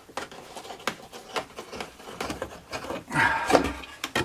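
A wooden workpiece clamp being undone by hand, with small clicks and knocks, then the routed pine board scraping across the wooden table as it is pulled free near the end.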